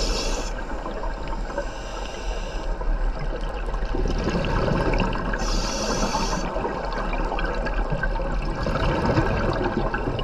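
Scuba diver breathing through a regulator underwater: a hissing inhale right at the start and another about five and a half seconds in, with gurgling exhaled bubbles in between.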